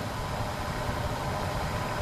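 Steady background noise with a faint, even hum.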